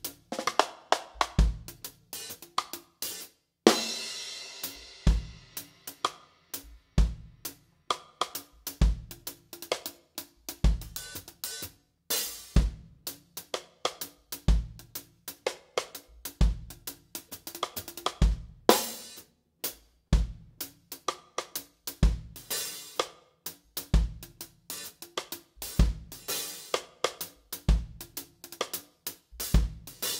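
Drum kit playing a reggae one-drop groove: a shuffled hi-hat pattern over cross-stick clicks, with the bass drum landing once a bar, about every two seconds. A cymbal crash rings out about four seconds in.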